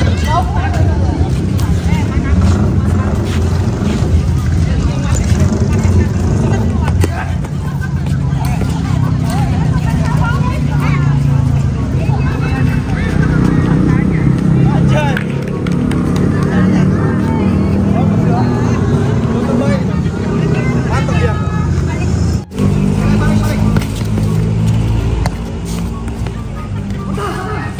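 Voices calling out over a loud, steady low rumble, with an abrupt break in the sound about 22 seconds in.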